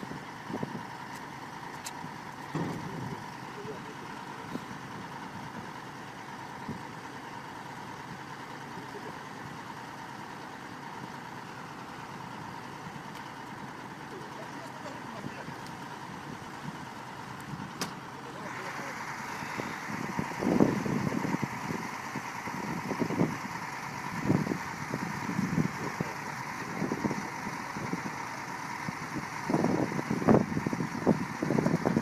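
Excavator diesel engine running steadily with a thin whine. Indistinct voices come in over it in the last third.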